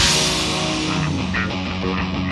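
Rock band music with guitars: the full band comes in suddenly and loudly at the start and plays on densely.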